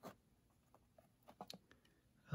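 Faint ticks and rustles of fingers working through a tightly packed cardboard box of trading cards: one tick at the start and a small cluster about two thirds of the way through.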